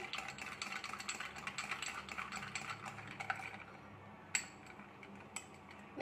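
A metal spoon stirring iced milk and cappuccino in a tall glass, clinking rapidly against the ice and glass. The stirring stops about three and a half seconds in, and two single clinks follow near the end.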